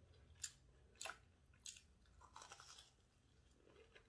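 Faint chewing of a crumb-coated cheese corn dog: a few crisp crunches about half a second apart, then a short run of crackly crunching in the middle.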